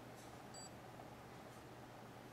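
Near silence: room tone with a low steady hum, and one brief, faint high-pitched beep about half a second in.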